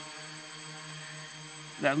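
Quadcopter's propellers and motors humming steadily as it hovers under autonomous control, one even low hum with a row of overtones above it.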